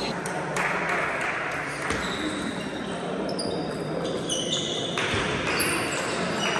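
Scattered clicks of table tennis balls bouncing on tables and bats from several matches across a large hall, with background voices.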